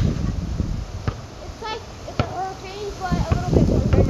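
Distant voices talking and calling out between about one and three and a half seconds in, over a low rumble of wind on the microphone, with a couple of sharp knocks.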